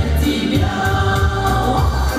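A women's folk ensemble singing a song in harmony into microphones, with amplified instrumental accompaniment carrying a strong bass line.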